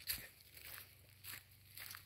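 Faint footsteps on a forest path of packed dirt and dry pine needles, one step about every half second.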